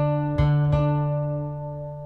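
Acoustic guitar plucking a low D and the D an octave above it, the octave shape on the fifth fret of the low E string. The notes are struck a few times within the first second, then left to ring and slowly fade.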